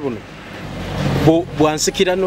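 Speech in Luganda breaks off for about a second while a steady road-traffic noise swells, then resumes.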